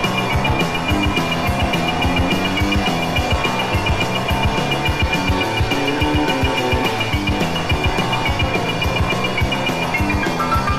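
Live rock and roll band playing an instrumental passage without vocals, drums keeping a fast, steady beat under sustained instrumental notes.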